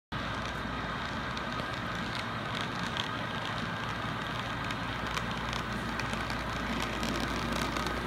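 Model train running on track: a steady rolling rattle with faint scattered clicks, growing slightly louder as the locomotives approach.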